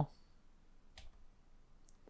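Two faint computer mouse clicks, about a second in and near the end, against quiet room tone.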